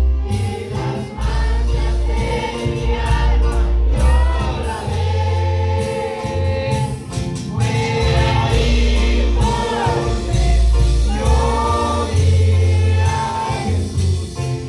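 Live gospel worship music: a man singing into a microphone over a band of keyboard and drums, with a heavy, pulsing bass line.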